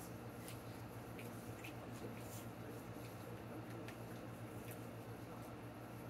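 Faint chewing of a mouthful of soft food, with small scattered wet mouth clicks over a low steady hum.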